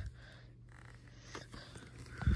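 Faint handling of a plastic Blu-ray case while someone tries to pry it open: light rubbing and scraping, with a small click about a second and a half in.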